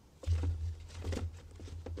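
Handling sounds of a new air filter being fitted into a Jeep Wrangler JK's plastic airbox: a run of small scrapes and knocks with dull low thuds as the filter's frame is worked down into its seat.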